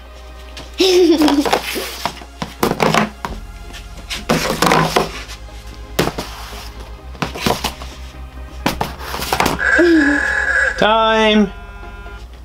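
A giant inflatable vinyl boxing glove bats and thumps small cardboard blind boxes and the tabletop in a series of irregular thuds and knocks, over background music.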